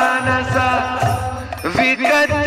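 A man singing a devotional chant into a microphone, the melody bending and gliding between notes, over a steady held low note and a regular low pulse.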